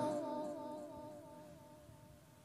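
A boy's melodic Quran recitation: the last held note of a phrase fading away over about two seconds.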